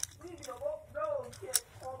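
Young voices talking quietly, with two sharp clicks, one at the start and one about a second and a half in.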